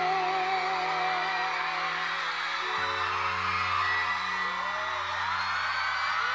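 The closing chords of a live ballad held by the band, a singer's vibrato note fading out within the first second and a lower bass note coming in about three seconds in, while a crowd cheers and whoops.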